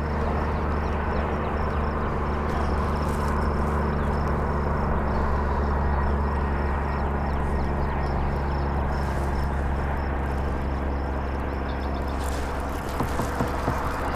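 A small motor hums steadily, with a faint fast ticking above it.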